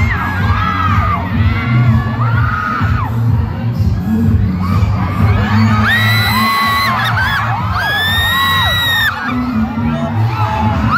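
A crowd of fans screaming and cheering over a pop song's heavy bass beat played through the PA, with long high-pitched screams swelling about six and eight seconds in.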